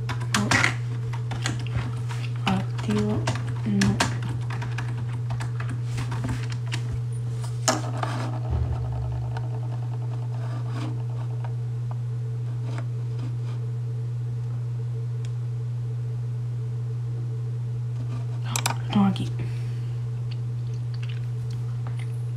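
Steady low electrical-sounding hum under scattered light clicks and rustles of pen and paper being handled at a desk, busiest in the first few seconds and again near the end.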